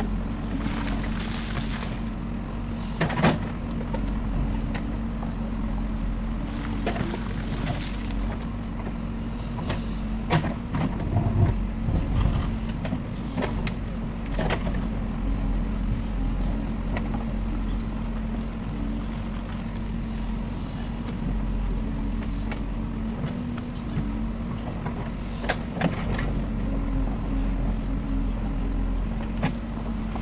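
A JCB 3DX backhoe loader's diesel engine running steadily under load as the backhoe bucket digs into landslide rock and mud, with a few sharp knocks of rock against the bucket.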